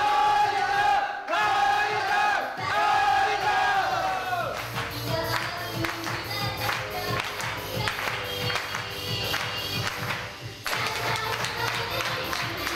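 Live idol-group pop song played loud through the theatre's sound system: female voices hold long sung notes, each falling away at the end, for the first few seconds, then the backing track carries on with a steady beat, with audience voices mixed in.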